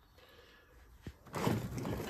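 A single click about a second in, then rustling and knocking as the power supply's thick sleeved cable bundle is grabbed and moved.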